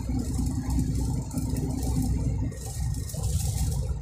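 Heavy truck's diesel engine running on the move, heard from inside the cab as a steady low drone, with the cab rattling.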